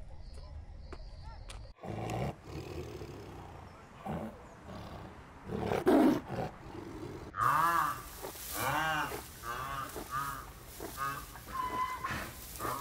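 Tiger growling in a few gruff bursts, the loudest about six seconds in. From about seven and a half seconds, another animal gives a run of short, repeated rising-and-falling calls.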